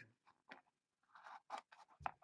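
Near silence, with a few faint, brief scrapes and rustles of cards and packaging being handled.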